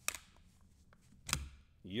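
Hard plastic trading-card holders clicking as they are handled and set down: a small click at the start and a louder click with a light knock about a second and a quarter in.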